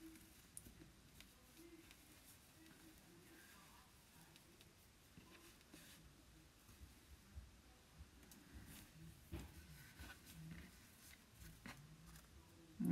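Near silence, with faint rustles and light taps as a strip of burlap is folded in half and pressed flat by hand.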